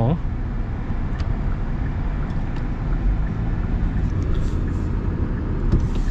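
Steady low rumble of a 2025 Kia Sportage being driven, its tyre and road noise and 2.5-litre four-cylinder engine heard from inside the cabin.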